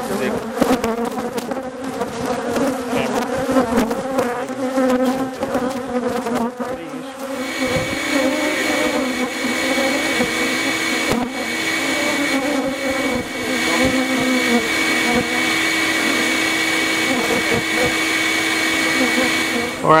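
Aggressive honeybees buzzing close around the microphone, a wavering drone. From about seven seconds in, a bee vacuum's motor runs steadily with a hiss under the buzzing.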